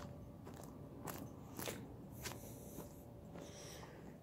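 Faint footsteps, a soft crunch about every half second, as someone walks with the camera, over a faint steady hum.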